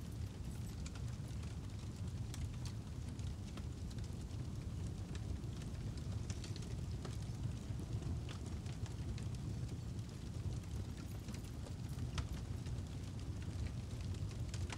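Fire sound effect: a steady low rumble with scattered faint crackles.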